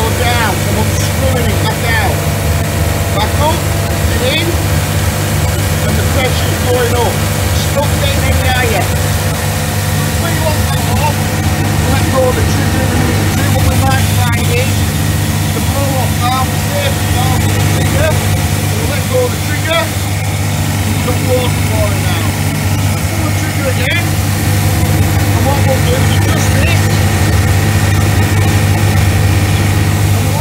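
Pressure washer's electric motor and W98 pump running steadily with the gun's trigger held, the pump working under pressure; a steady low hum.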